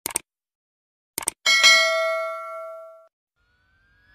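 Subscribe-button animation sound effect: a pair of mouse clicks, another pair about a second later, then a notification-bell ding that rings for about a second and a half and fades away.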